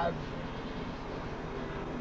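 Steady vehicle rumble with a regular low pulse, running on through a pause in a man's speech; he says one word at the very start.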